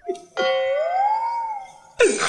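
An edited-in comedy sound effect: a chime-like electronic tone that starts suddenly about a third of a second in, its pitch bending up and back down, and fades away over about a second and a half.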